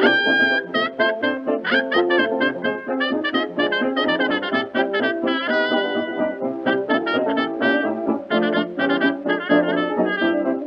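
A 1920s dance orchestra plays an instrumental break from a 1928 Victor Orthophonic 78 rpm record, with brass carrying the tune over a steady dance rhythm.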